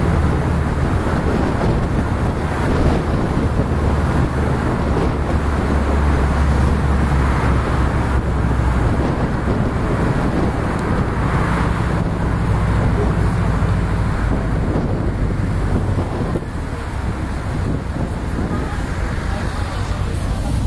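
A Subaru Impreza driving at city speed, heard from inside the car: a steady drone of engine and tyre noise over a deep low rumble, easing slightly about two-thirds of the way through.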